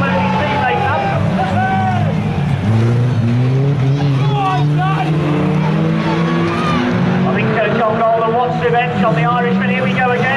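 Banger racing cars' engines running and revving on the track, one engine's pitch climbing slowly for several seconds in the middle, with voices over it.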